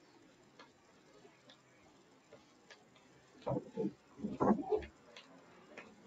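Faint, scattered clicks of a computer mouse as the view is orbited and zoomed. About three and a half seconds in comes a louder, low burst of sound that lasts about a second and a half.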